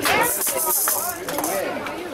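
A high hiss lasting about a second and a half, over people talking.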